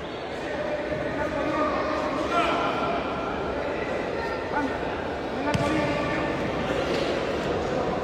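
Ambience of a large indoor sports hall, echoing: distant voices of players and spectators calling out during a youth football match, with one sharp knock about five and a half seconds in.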